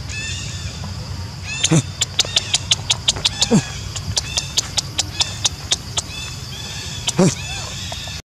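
Macaque monkeys calling: a run of short, sharp cries at about four a second, among high arching chirps, with a longer rising cry near the start and another near the end.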